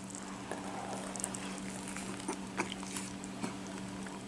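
A man biting into and chewing a mouthful of burger, with faint, scattered wet mouth clicks, over a steady low hum.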